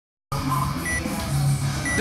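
Workout countdown timer beeping: two short high beeps about a second apart, over a low background hum.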